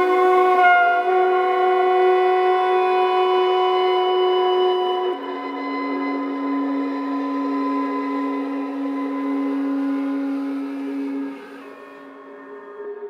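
Slow, sustained held tones from violin, soprano sax and EBow guitar, several notes overlapping in a drone-like texture. About five seconds in, the lowest note steps down to a lower pitch and holds. Near the end the sound grows quieter.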